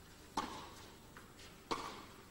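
Tennis ball struck by rackets in a baseline rally: two sharp hits about 1.3 seconds apart, each ringing briefly in the hall, with fainter ticks between them.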